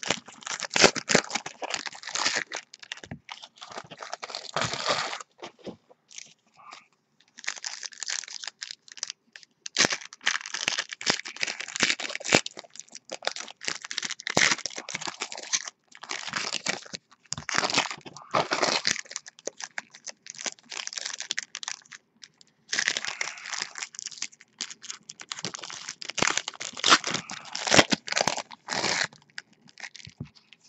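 Foil trading-card pack wrappers being torn open and crinkled by hand, in irregular bursts of crackling with a couple of short pauses.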